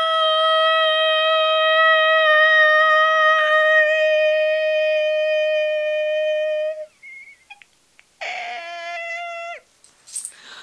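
A loud, very steady high-pitched tone with strong overtones, held for about seven seconds and then cut off abruptly. After a short pause a second, shorter tone of about the same pitch sounds near the end.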